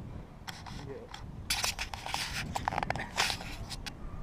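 Close-up scraping and rustling from hands gripping and rubbing on the metal top post of a rope climbing net, in quick irregular bursts that thicken from about a second and a half in.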